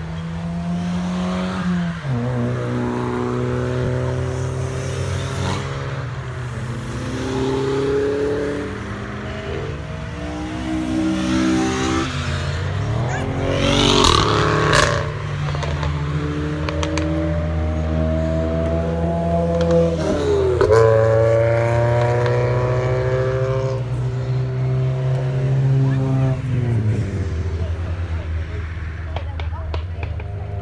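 Cars lapping a race circuit, their engines accelerating one after another. Each engine's pitch climbs and then drops back at every gear change. The loudest moment comes about halfway through, as a car passes close by.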